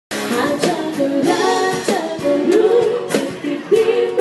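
A pop-style song: a lead vocalist singing over a small band of guitar and drums. It starts abruptly just after the opening instant, with sustained, wavering sung notes and regular drum hits.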